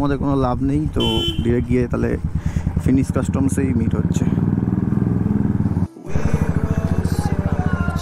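Royal Enfield Classic 350's single-cylinder engine thumping steadily as the bike is ridden, cutting out for a moment about six seconds in.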